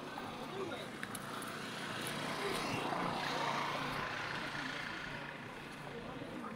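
A vehicle passing on the road, its noise swelling to a peak about three and a half seconds in and then fading away.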